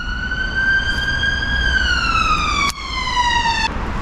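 Baitcasting reel spool spinning as line pays out during a cast, giving a high whine. The whine rises slightly, then falls steadily in pitch as the spool slows, and cuts off suddenly near the end when the spool stops. A single sharp click comes about two-thirds of the way through.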